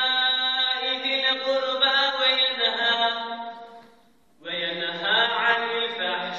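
A young man's voice chanting Arabic recitation of the sermon in long, melismatic held notes. The chanting fades into a short breath pause about four seconds in, then resumes.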